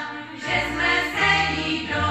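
Group of women singing a Wallachian folk song together in several voices, with a low note sounding underneath from about half a second in.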